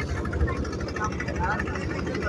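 Small engine of a wooden river boat running steadily under way, a fast, even low thudding, with the rush of water and wind over it.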